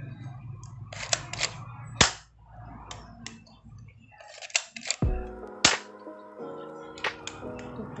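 A toy Glock 18 pellet pistol handled, its plastic slide and parts giving sharp clicks and clacks, the loudest about two seconds in and near six seconds. Background music with held chords comes in about halfway.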